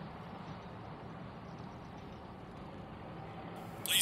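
Car engine idling: a faint, steady low hum with outdoor background noise.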